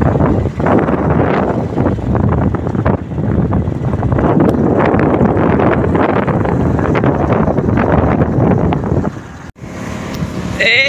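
Wind rushing and buffeting over a phone's microphone on a moving motorcycle, with the motorcycle's engine running underneath. The sound cuts out briefly near the end.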